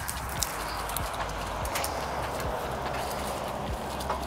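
Peach-tree leaves and twigs rustling as clusters of small green peaches are pulled off by hand while the fruit is thinned, with scattered small clicks and snaps.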